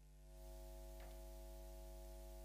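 A faint, steady held electronic chord of several pitches, like a sustained synthesizer pad, growing slightly louder about a third of a second in.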